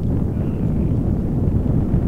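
Wind buffeting the microphone outdoors: a steady low rumble with no distinct events.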